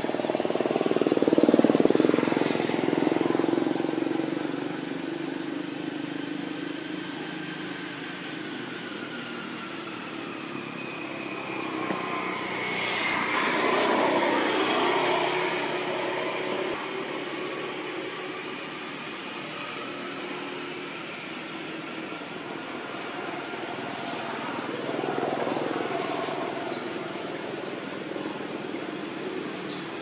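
Motor engine noise that swells and fades about three times over a steady background hum.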